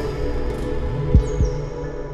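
Intro jingle music with held chords and deep bass thumps, two of them close together about a second in. A high sweep falls in pitch at the same time, and the music slowly gets quieter near the end.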